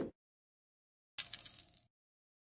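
Editing-app end-card sound effect: a quick upward swoosh right at the start, then about a second in a short, bright coin-like chime, the cue for the like, coin and favourite icons lighting up.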